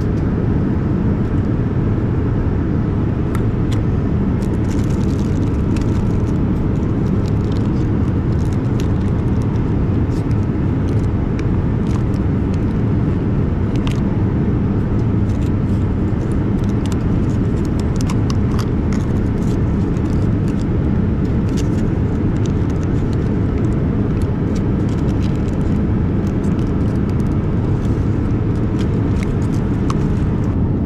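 Steady low roar of a Boeing 787 Dreamliner's cabin in cruise, with scattered crinkles and clicks of foil and plastic food wrappers being handled at the tray table.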